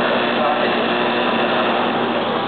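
Automatic PCB lead-cutting machine running, a steady even hum from its motor-driven blade spindle and conveyor, with faint voices underneath.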